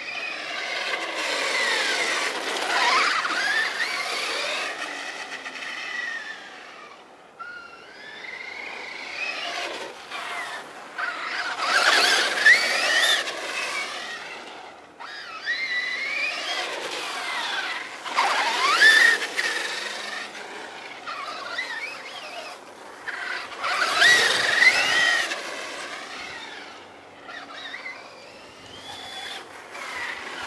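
Traxxas Stampede 4x4 VXL radio-controlled monster truck's brushless electric motor whining, its pitch rising and falling as it speeds up and slows down, with a hiss from the drivetrain and tyres. It swells and fades in about four loud passes as the truck drives toward and away from the listener.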